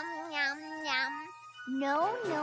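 A cartoon voice making a wordless, hummed sound in two long notes with a wobbling pitch and a short break about one and a half seconds in.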